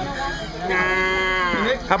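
A man imitating a buffalo by calling through cupped hands: one long held call of about a second, its pitch falling as it ends.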